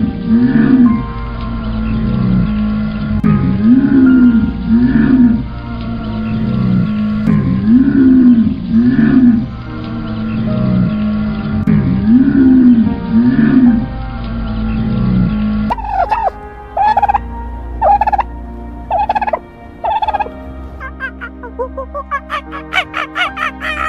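Animal calls: pairs of low, arching calls repeating about every four seconds, then, about three-quarters of the way in, a run of six or so short, higher calls.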